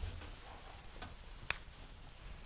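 Footsteps of a person in sneakers walking quickly across a hard studio floor, heard as a few faint taps, the sharpest about a second and a half in.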